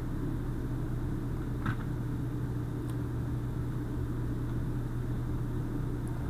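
Steady low hum over a low rumble: background room and microphone noise between narration, with one faint click about a second and a half in.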